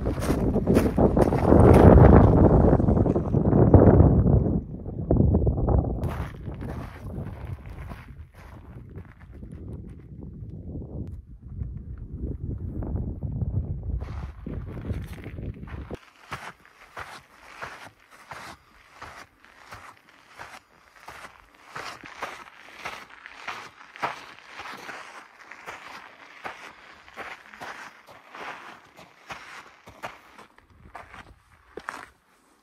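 Wind buffeting the microphone in the first few seconds, fading away. Then footsteps on loose volcanic gravel and ash at a steady walking pace, about two steps a second.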